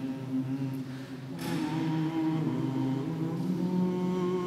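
Voices chanting slowly in long held notes, growing louder about a second and a half in.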